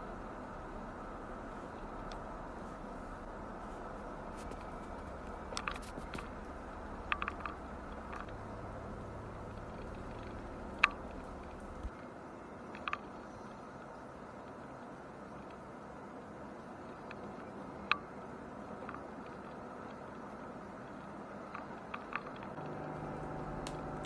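Steady road and engine noise inside the cabin of a moving truck, with a low drone that drops away about halfway through and a few short sharp clicks scattered through.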